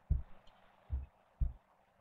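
Three short, low thumps in under two seconds, with quiet between them.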